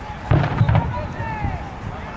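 Young players' voices shouting in a football huddle, cut by a short burst of loud knocks about a third of a second in, lasting about half a second.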